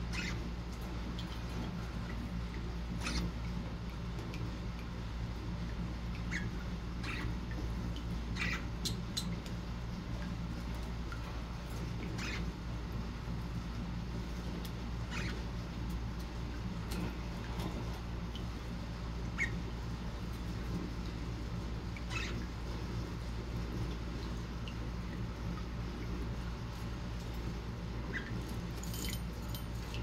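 A budgerigar giving brief high chirps now and then, about a dozen spread over the time and a few close together near the end, over a steady low background hum.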